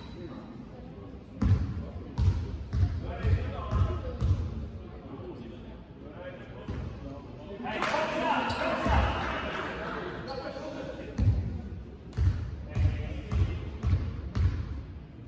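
A basketball being dribbled on the sports-hall floor, thudding about twice a second in two spells, near the start and again near the end, echoing in the large hall. In between, players' voices call out across the court.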